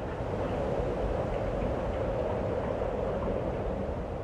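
A steady, even rumbling noise, an added intro sound effect, fading in at the start and out about a second after.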